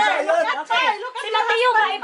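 Several people talking over one another in excited chatter.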